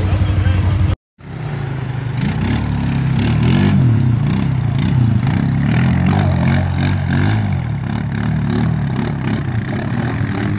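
ATV engine running steadily, cut off short about a second in. Then an ATV engine revving and labouring as it drives through deep water, its pitch rising and falling over and over with the throttle.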